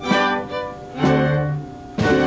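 Theatre pit orchestra with strings playing a slow, stately gavotte: two strong accented chords about a second apart, each dying away.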